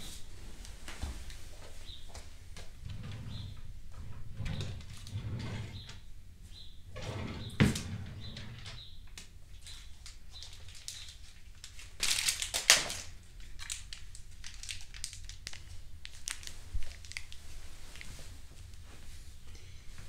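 A wooden dresser drawer being opened and rummaged through: scattered small clicks and knocks of things being moved, with a sharp knock about halfway and a short burst of rattling a few seconds later.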